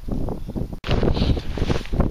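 Wind buffeting the microphone, loud and gusty. It drops out for an instant just under a second in, then carries on.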